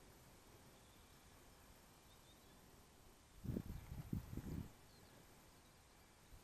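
Faint outdoor background broken about three and a half seconds in by a gust of wind buffeting the microphone: a low rumble in several quick pulses lasting just over a second.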